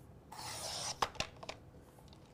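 Sliding paper trimmer's blade head drawn along its rail, slicing a strip off a sheet of paper in a half-second rasp, followed by three sharp clicks of the plastic cutting head.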